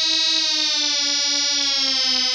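Breakdown in a hard house track: the kick drum drops out and a single held synthesizer note slowly slides down in pitch.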